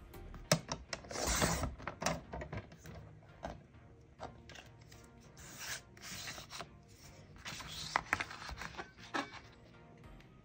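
Cricut sliding paper trimmer cutting a printed sheet: sharp clicks of the cutting bar and blade carriage, and a scraping swish of the blade run along the track about a second in. Later come more rubbing and rustling swishes and clicks as the sheet is slid and repositioned on the trimmer.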